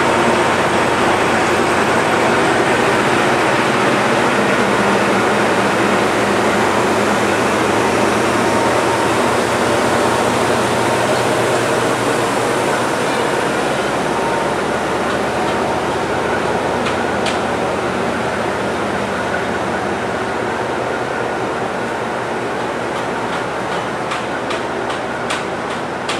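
Vietnam Railways D19E diesel-electric locomotive running at idle, a loud steady engine and cooling-fan noise that grows slowly fainter, with a few sharp clicks near the end.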